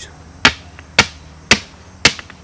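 Three sharp hammer blows, about two a second, driving a rigid PVC fence corner post and brace into the ground.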